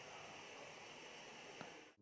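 Near silence: a 12 V Noctua hot-end cooling fan, fed from the printer's 24 V supply through a buck converter, running with only a faint steady hiss, the quiet replacement for the buzzing stock fan. One faint tick about one and a half seconds in.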